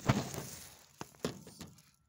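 Plastic bag rustling and the phone being handled close to the microphone: a loud rustle and knock at the start that fades, then a few light clicks about a second in.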